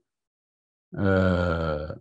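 A man's voice holding one low, steady drawn-out sound for about a second, starting about a second in and cutting off abruptly, after a second of dead silence typical of a video-call audio dropout.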